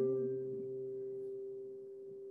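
The final chord of a song rings out on a keyboard and fades slowly as held steady tones. A woman's last held sung note, with vibrato, trails off in the first half second.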